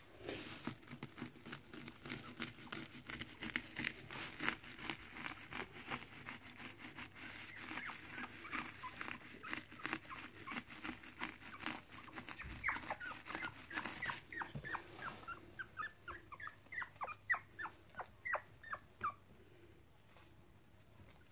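Three-week-old Toy Fox Terrier puppies whimpering and squeaking. From about halfway through comes a run of short, high cries, each falling in pitch, about three a second, which stops shortly before the end.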